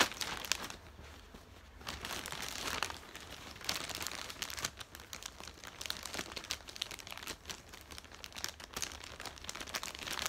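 Plastic packaging bag crinkling and crackling in irregular bursts as a folded fabric photography backdrop is handled and pushed into it, with a quieter lull a second or so in.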